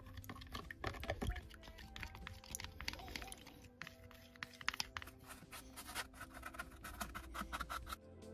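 A wooden stirring stick scraping and clicking against a clear plastic tub as PVA glue is mixed into water, in a quick, irregular run of clicks, over background music.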